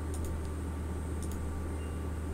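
Steady low electrical hum of a home recording setup, with a few faint mouse clicks: two close together early on and two more a little past the middle.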